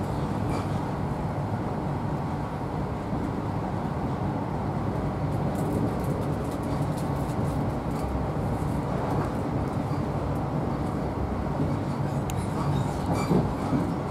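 Inside a coach of a Class 43 HST at speed: the steady rumble of wheels running on the rails, with a low hum under it and a couple of sharp clicks near the end.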